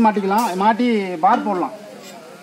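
Speech only: a man talking, with no engine running.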